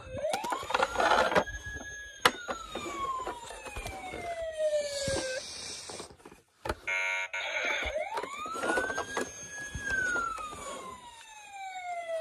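Police siren wailing: a quick rise, a short hold and a long slow fall in pitch, heard twice, with a few sharp knocks in between.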